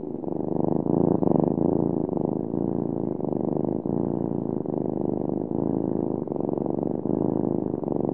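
A cat purring, close and steady, swelling up over the first second.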